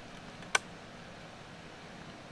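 A single sharp computer mouse click about half a second in, over a steady low hiss.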